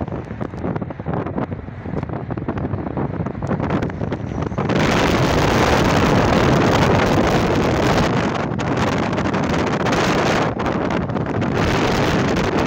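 Wind buffeting a phone's microphone, a rumbling rush that turns suddenly louder and fuller about five seconds in.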